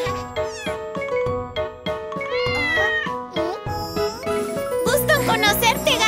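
A kitten meowing over light instrumental children's music, with the longest meow about halfway through. The music grows fuller near the end.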